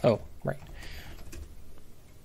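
A few keystrokes typed on a computer keyboard.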